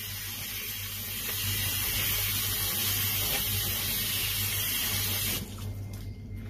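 Tap water running into a stainless-steel sink as soapy hands are rinsed under the stream, a steady splashing hiss that cuts off suddenly near the end.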